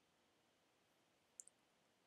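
Near silence, with two faint, quick clicks close together about one and a half seconds in: a computer mouse button being clicked.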